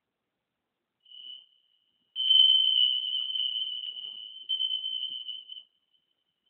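A high single-pitched tone sounds: briefly and faintly about a second in, then louder about two seconds in, holding with a wavering level for some three seconds before fading out. It is the signal that ends the final relaxation.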